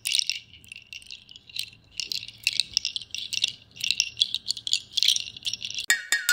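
Irregular high rattling in uneven bursts, like something small being shaken.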